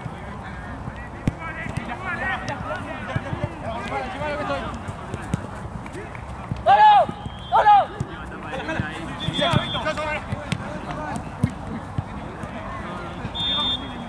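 Players and spectators shouting and calling during a football match, with two loud shouts in quick succession about seven seconds in.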